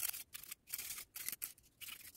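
Julienne peeler scraping through a green apple in quick repeated strokes, about five or six in two seconds, shredding it into thin strips.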